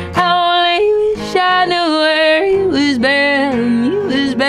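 A woman singing long, held wordless notes that jump and swoop between pitches in a yodel-like way, over a strummed acoustic guitar.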